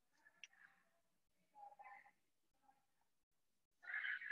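Near silence: room tone, with a faint click about half a second in and a faint brief murmur near the middle.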